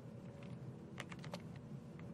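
Faint computer keyboard keystrokes: a few quick key clicks around a second in, as a code snippet is inserted in the editor.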